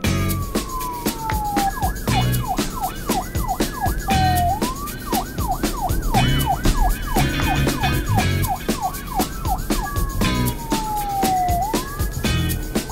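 Police siren sound effect over a beat-driven music track. A long falling tone gives way to quick repeated up-down yelps, about four a second, and the falling tone comes back about ten seconds in.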